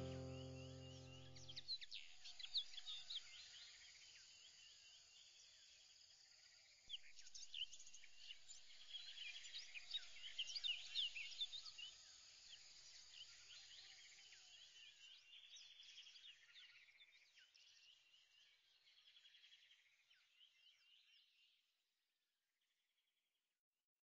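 Background music fading out in the first couple of seconds, then faint birds chirping: many quick, high calls, busiest in the middle, thinning out and fading away near the end.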